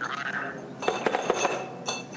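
Bottles clinking against one another with short ringing knocks, a cluster of clinks in the second half, as a row of bottles is loaded onto a bottle-filling machine.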